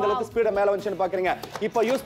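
A voice talking over a few clacks of a plastic push chopper, its spring-loaded plunger slapped down by hand so the blades chop onion in the jar.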